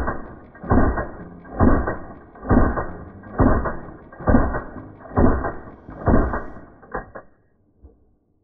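Automatic fire from a CZ 247 submachine gun, slowed down: eight deep, drawn-out booms about a second apart, then two weaker ones as the burst ends near the end.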